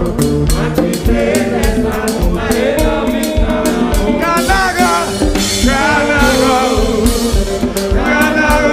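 Congregation singing a lively worship song together with a band, a drum kit keeping a steady beat.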